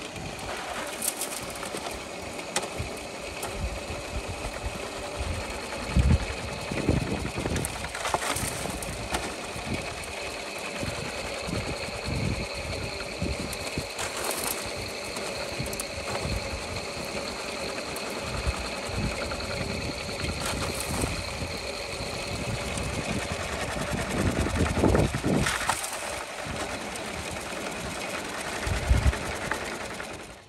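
Homemade electric soil sieve running steadily, its electric motor driving the shaking screen by belt and pulley as compost is sifted through it. Now and then a shovel scrapes and knocks as a load of soil is thrown onto the screen.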